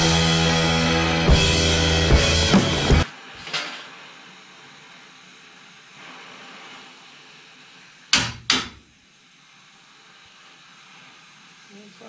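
Rock music with drums for about the first three seconds, cutting off suddenly. Then the steady hiss of a gas torch heating a steel truck bumper, with two sharp knocks close together about eight seconds in.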